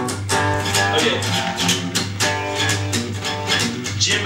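Acoustic guitar strummed in a steady rhythm, about two chords a second, the strings ringing between strokes.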